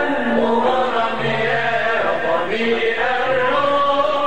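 Men's voices chanting an Arabic religious song (inshad), the melody winding up and down in long ornamented lines over low held notes.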